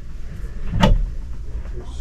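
A cabinet door under a bathroom sink clicking open once, about a second in, over a steady low background rumble.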